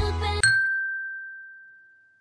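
Background pop music cuts off about half a second in, followed by a single high bell-like ding that rings on and slowly fades away.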